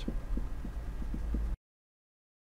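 Marker pen writing on a whiteboard: a row of faint short strokes over a steady low electrical hum, until the audio cuts out to dead silence about one and a half seconds in.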